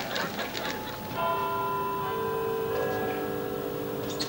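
A large bell chiming, struck about a second in and again near the end, each stroke's tones ringing on and overlapping the next.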